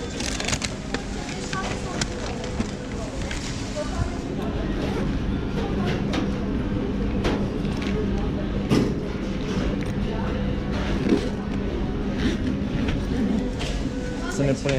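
Busy fast-food restaurant ambience: indistinct background voices over a steady low machine hum, with scattered clicks and rustles as an insulated delivery backpack is handled close by.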